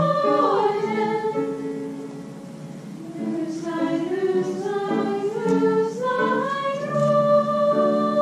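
A children's choir singing a German lied from the early Romantic period in parts. The singing softens about two seconds in, then builds again to a long held chord near the end.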